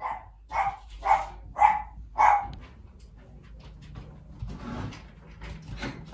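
A pet dog barking five times in quick succession, about half a second apart, then falling quiet.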